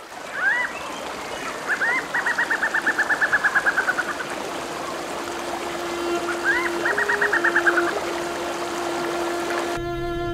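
River water rushing over rocky rapids. A bird calls twice over it, each time a rising note followed by a fast trill of about ten notes a second. From about halfway, a steady low musical note is held, and the water sound cuts off abruptly near the end.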